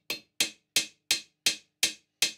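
Hammer tapping a small cast iron plug, set in Loctite 603, into a re-drilled hole in a cast iron base casting: a steady run of light, sharp strikes, about three a second.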